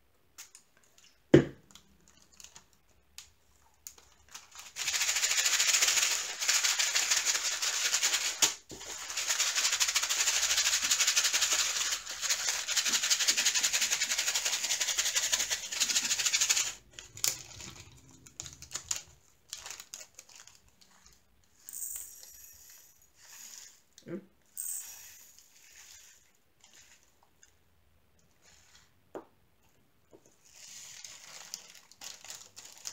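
Square diamond-painting drills rattling in a small plastic bag as it is shaken. It is a dense rattle of many tiny ticks lasting about twelve seconds with a brief break, preceded by a single sharp click. It is followed by scattered soft crinkles of the bag.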